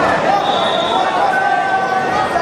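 Crowd babble: many voices talking and calling out at once in a busy gym, with no single voice standing out.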